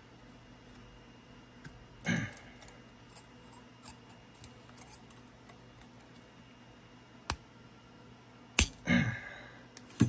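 Tweezers and thin copper strip handled on a work mat, with a short metallic clatter about two seconds in. Late on come sharp snaps, one small and then a louder crack with a brief rattle after it: the AWithZ P120D spot welder's AW240 pen firing into a copper–nickel–copper sandwich.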